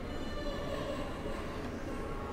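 Church organ holding a soft, sustained chord, with the notes steady and unbroken.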